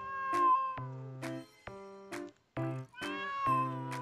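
A stray cat yowling in an excited state, a drawn-out call that can sound like a crying baby: two long yowls of about a second each, the first at the start and the second near the end, each sliding slightly down in pitch. Background music with a steady beat plays under it.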